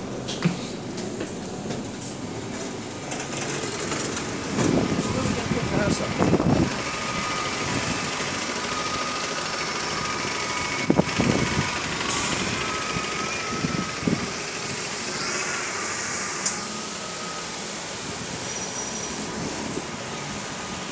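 Single-deck bus pulling away from a stop and driving off, its engine running with a faint steady whine, amid street traffic noise. Short bursts of voices come about 5 s, 11 s and 14 s in.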